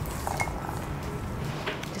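A couple of light clinks as garlic cloves are picked out of a small ceramic bowl, over soft background music.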